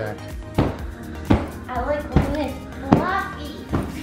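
Background music with a steady beat and a vocal melody.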